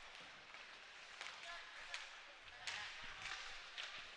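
Faint ice-rink game sound: skates on the ice with a few sharp clicks of sticks and puck scattered through.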